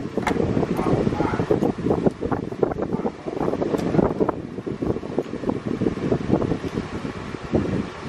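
Steady wind rumbling on the microphone, with voices in the background and light handling clicks.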